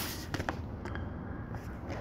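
Faint handling noise of a Blu-ray steelbook case being opened and held, with a few light clicks in the first second.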